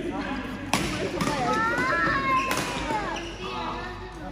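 Badminton rally: two sharp racket hits on the shuttlecock about two seconds apart, with sneakers squeaking on the synthetic court floor in between.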